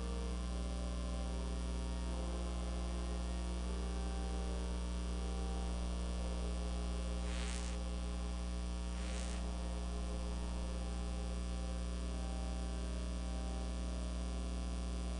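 Steady electrical mains hum in the recording, with faint held tones beneath it that change every second or so. Two brief noises come about seven and nine seconds in.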